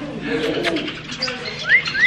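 Birds calling: low cooing in the first half, then two clear whistled notes that each rise and fall, near the end.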